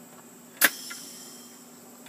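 Air hose quick-connect coupler snapped onto a pneumatic framing nailer's air inlet: one sharp click about half a second in, followed by a short hiss of air as the tool pressurises.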